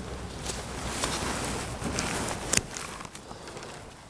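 Rustling and handling noise with steps on dry orchard grass, and one sharp click of hand pruning shears about two and a half seconds in.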